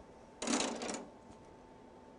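Plastic embroidery hoop with metal brackets clattering as it is lifted from a wooden tabletop: one brief rattle of about half a second, starting about half a second in.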